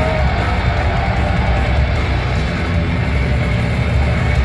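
Heavy metal band playing live through a large PA: distorted electric guitars, heavy bass and drums at a steady, loud level, heard from within the crowd.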